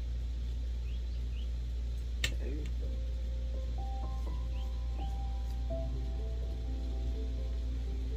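Steady low hum with soft background music of long held notes coming in about three seconds in. A single sharp click sounds a couple of seconds in, with a few faint high chirps.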